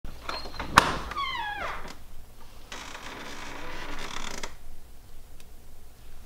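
A door opening in a kitchen: a sharp click, then a short creak falling in pitch. Then comes about two seconds of rustling hiss.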